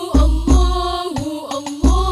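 A woman singing an Arabic sholawat solo, holding long ornamented notes, backed by banjari rebana frame drums with deep booming bass strokes and sharper hand strokes.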